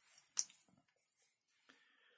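A lithium-ion battery cell and a small battery indicator board handled by hand: one sharp click about half a second in, then a few faint taps.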